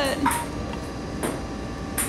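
A young woman's voice trailing off at the start, then steady background hiss with a couple of light clicks.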